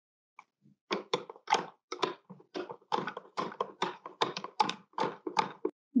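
A spoon stirring water in a plastic cup, knocking against the cup's sides about four to five times a second. The knocks start about half a second in and stop just before the end.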